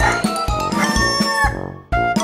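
Intro music with a steady drum beat and a rooster crow over it, the crow held about a second in. Everything fades out just before the end.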